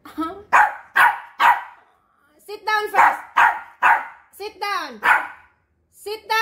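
Small poodle barking repeatedly in short, sharp barks: a run of about four, a brief pause, then about seven more, a few of them dropping in pitch. The owner takes the barking as the dog being angry with her.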